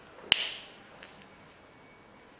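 One sharp click with a brief ring, about a third of a second in.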